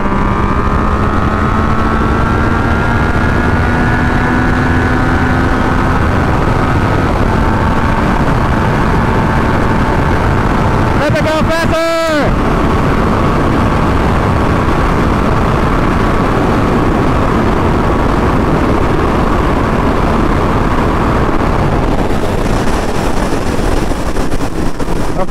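Yamaha FZ-09's three-cylinder engine running hard at highway speed, under heavy wind rush, its pitch climbing slowly in the first few seconds. About twelve seconds in there is a brief break with a quick sweep in pitch before the steady run resumes.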